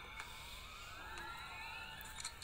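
A faint high whine rising steadily in pitch, over a faint low hum.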